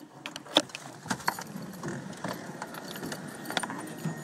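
Irregular light clicks and rattles of handling inside a car, the sharpest about half a second in.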